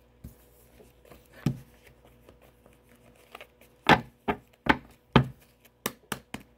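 A tarot deck being shuffled by hand, the cards slapping together in sharp clicks. It is quiet at first; from about four seconds in comes a run of card slaps roughly every half second.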